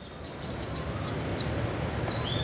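Small birds chirping: several short high calls, with a longer falling call near the end, over a steady low background rumble.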